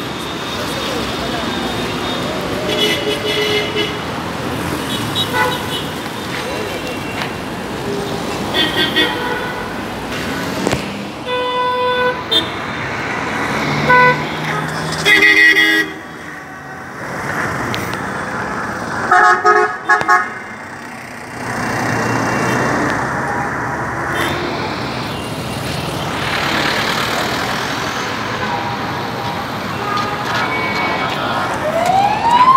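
Busy city street traffic with many short vehicle horn toots, one after another, the loudest two bursts about halfway through and about two-thirds in, over a steady rush of passing engines and tyres.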